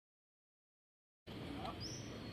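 Total silence for just over a second, then low steady outdoor background noise cuts in abruptly, with a short high rising chirp near the end.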